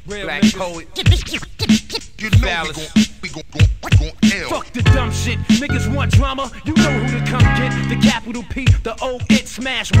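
Hip hop beat: a drum loop with a kick and snare landing about every two-thirds of a second, under a looped sample with chopped vocal snippets. Sustained chords come in about halfway, and a rapper's voice enters right at the end.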